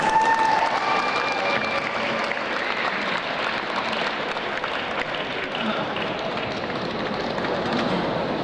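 Audience applauding steadily, with a voice calling out over the clapping near the start.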